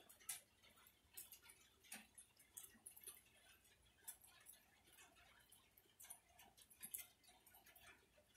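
Near silence, broken by faint, irregular ticks of rainwater dripping from a porch roof.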